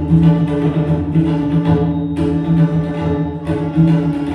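Group tabla ensemble: five tabla sets played together in a fast, continuous run of strokes, with the tuned heads ringing in a steady tone underneath.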